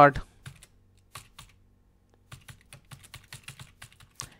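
Computer keyboard keystrokes: a few scattered taps in the first second and a half, a short pause, then a quicker run of typing through the second half.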